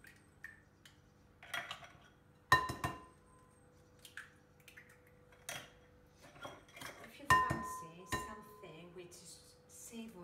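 Eggs knocked against the rim of a glass mixing bowl to crack them, several separate knocks, each making the bowl ring briefly; the two loudest come about two and a half and seven seconds in.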